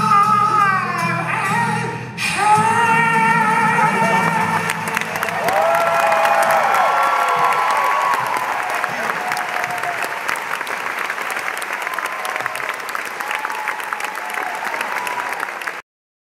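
Live male singing into a microphone with acoustic guitar accompaniment, ending on long held notes. Audience applause and cheering swell in from about five seconds in and carry on until the sound cuts off suddenly near the end.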